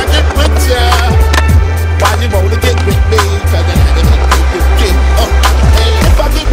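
Hip-hop beat with deep bass and regular drums, over a skateboard rolling and grinding on a concrete ledge.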